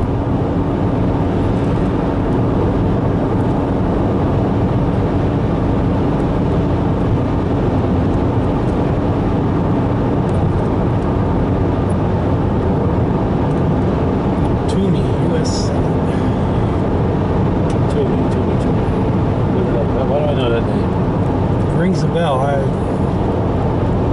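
Steady road and engine noise heard inside a car's cabin while it cruises at highway speed, with a faint low hum underneath.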